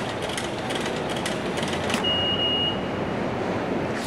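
Steady rushing noise of a subway station with rail traffic, with a few faint clicks. A single high steady tone starts about halfway through and lasts a little over a second.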